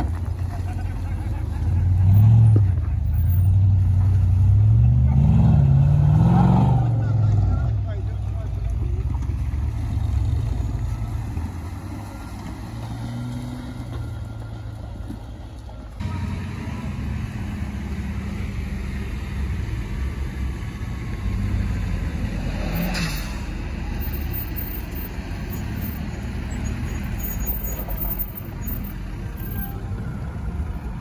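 Lifted off-road Jeep Wrangler's engine revving as it drives up a dirt track, its pitch rising twice in the first several seconds. After a cut, a steadier, lower engine rumble from another lifted 4x4, with one sharp click about 23 seconds in.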